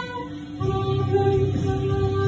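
Female voice singing into a microphone over backing music: a held note ends, a brief lull of about half a second, then a lower note sustained over a steady accompaniment.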